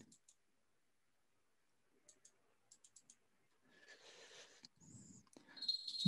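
Near silence broken by a few faint, short clicks, with a little soft rustle later.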